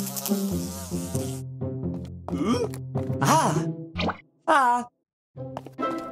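Cartoon sound effect of a housefly buzzing over light background music, fading out about a second and a half in. Swooping, gliding pitched notes follow.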